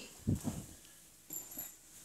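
A length of printed dress fabric flung open and spread over a wooden table: a soft thump about a third of a second in as it lands, then a brief faint rustle of the cloth.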